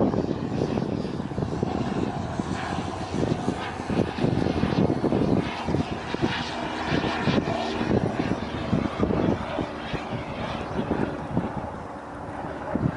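Jet aircraft flying overhead, its engine noise steady and rising and falling slightly as it manoeuvres, easing a little near the end.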